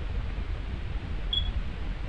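Steady low hum and hiss of microphone background noise, with one brief high chirp about two-thirds of the way in.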